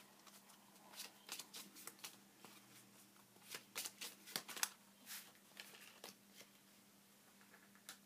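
Tarot cards being shuffled by hand: faint, irregular soft flicks and slides of the cards, busiest around the middle.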